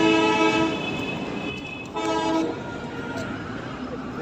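A horn sounding with a steady, chord-like tone: one long blast, then a short one about two seconds in.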